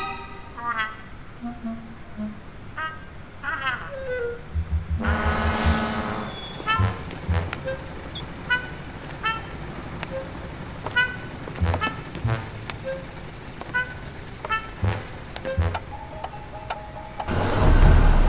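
Animated-film street sound design: a city bus pulls up with a burst of air-brake hiss about five seconds in. Short electronic beeps then repeat roughly once a second, with occasional soft low thumps, and music swells back in loudly near the end.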